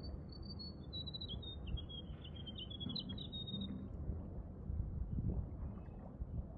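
A small bird singing a quick run of chirps and trills that steps down in pitch, stopping about four seconds in, over a low background rumble.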